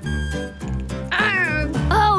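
Background music with a cartoon puppy's bark-like voice call, starting about a second in and sliding down in pitch.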